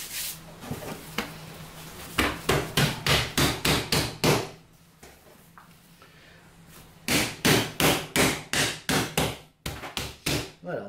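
Hands pressing and slapping firm, chilled brioche dough down onto the work table as it is folded to degas it. The knocks come quickly, about four a second, in two runs of about two seconds each with a quieter pause between.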